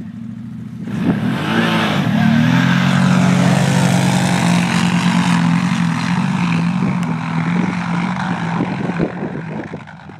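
Two 1000 cc V-twin ATVs, an Arctic Cat Thundercat and a Can-Am, launching side by side about a second in and accelerating hard in a drag race. Their engines rise in pitch, then hold a steady full-throttle note that fades as they pull away into the distance.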